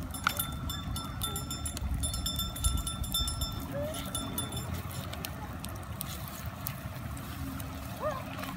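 Wood fire crackling with scattered sharp pops over a steady low rumble of the river running beside it. A thin, steady high whine comes through during the first half, and there is a brief distant animal call.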